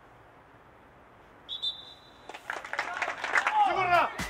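Faint steady outdoor hiss, then a referee's whistle blown once, a short steady high note about one and a half seconds in, followed by a rising mix of voices and shouts.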